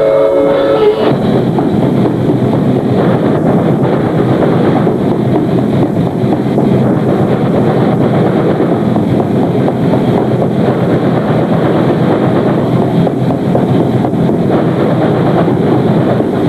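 Metal band playing live, heavily distorted: a held electric guitar chord rings until about a second in, then gives way to a dense, fast, unbroken wall of distorted guitars and drums.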